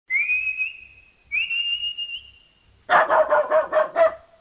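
Two whistled calls, each sliding up and then held, followed near the end by a quick run of dog barks, about six in a second.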